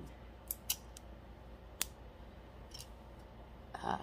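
A few small, sharp clicks and taps as small craft items are handled and set down, over a low steady hum.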